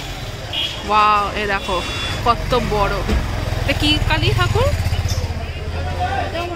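Busy street sounds: people talking, with a motor vehicle's engine running close by as a low rumble that grows stronger about two seconds in.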